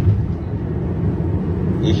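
Steady low rumble of a moving car, heard from inside the cabin.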